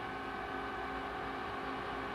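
Steady background hum of an airliner cockpit in flight: an even drone with faint steady tones over it.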